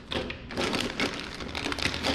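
Clear plastic bag crinkling and rustling in the hands, with the small plastic camera-mount parts inside it shifting and clicking.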